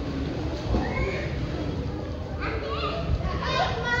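Young children shrieking and calling out while playing in a swimming pool, with high squealing cries in the second half, over the sound of splashing water.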